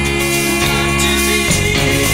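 Progressive rock recording from 1979: a band playing sustained chords over a steady bass line, with the chord changing about a second and a half in.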